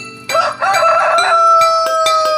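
A rooster crowing once, loud: a few broken, rising notes, then one long held final note, over soft music.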